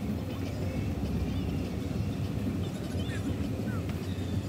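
Car driving slowly, a steady low rumble of engine and tyres heard from inside the cabin.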